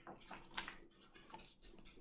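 Page of a hardcover picture book being turned: faint papery rustling and a few small clicks, the loudest about half a second in.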